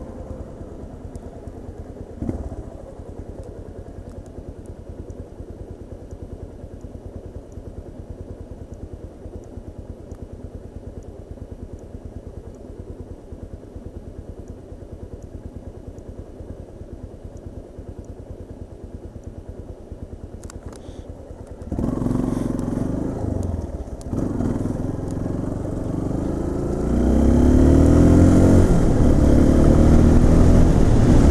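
Yamaha Lander 250's single-cylinder four-stroke engine idling steadily at a standstill, with a brief knock about two seconds in. Near the end it opens up suddenly as the bike pulls away, then climbs louder and higher in pitch as it accelerates.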